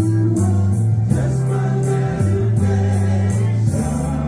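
A male vocal group singing together in harmony, with a bass line and drums keeping a steady beat behind them.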